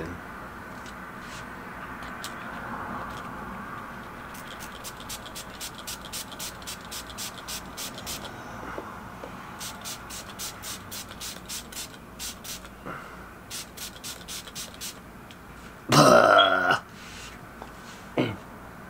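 Pump spray bottle of water and stain shield spraying onto a sneaker in quick strokes, about three short hisses a second, in several runs with pauses between. Near the end comes one loud, short voice sound from a person, not words.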